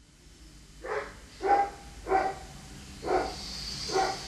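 An animal barking: about five short barks at uneven intervals, the second one the loudest.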